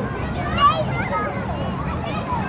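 Young children's high-pitched voices and calls, the loudest cry about two-thirds of a second in, over a steady low hum of city background noise.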